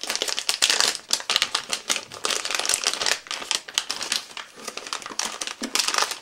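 A plastic soft-bait package crinkling and crackling as it is opened by hand and the baits are pulled out: a dense, irregular run of sharp crackles.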